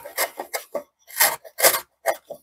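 Low-cost shoulder plane taking short strokes across the end grain of African mahogany. It makes a quick rasping cut with each pass, about five or six passes in two seconds.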